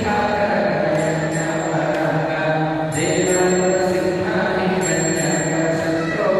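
Devotional mantra chanting in long, held tones, with a faint high metallic ringing that comes back about every two seconds.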